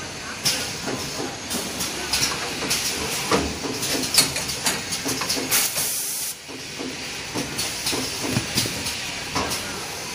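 XY-GU-26 double-deck facial tissue bundle packing machine running, with irregular mechanical clacks and bursts of hiss from its pneumatic cylinders. One long, strong hiss comes about six seconds in.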